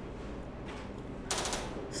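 A faint low hum, then, in the second half, a brief burst of rapid crackling clicks lasting about half a second.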